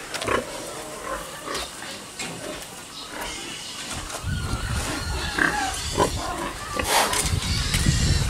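Pigs grunting in their pens, with scattered knocks. The sound grows louder and denser about halfway through, with a louder cry near the end.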